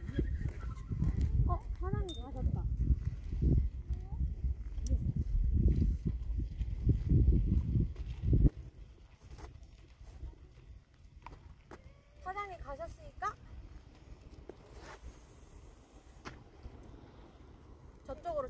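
Wind rumbling on the microphone, which stops suddenly about eight and a half seconds in. Short snatches of a woman's voice come in early on and again about twelve seconds in.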